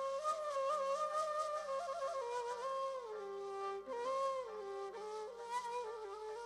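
Ney (Arabic end-blown reed flute) playing a melody with quick ornamental turns over a held lower note. The melody steps down about halfway through and climbs again soon after.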